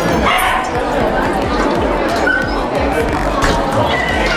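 A dog barking and yipping in short calls, a couple of times, over voices and background music.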